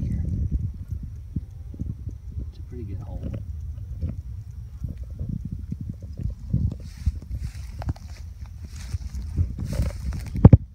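Irregular low thumps and rustling: slow footsteps through dry grass and handling of the phone by a beekeeper in a bee suit, with no steady tone over it.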